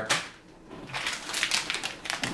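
Clear plastic accessory bag crinkling in a hand, a quick run of small crackles in the second second.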